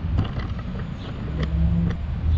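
Low rumble of road traffic, with a steady engine hum for about half a second in the second half and a few faint clicks.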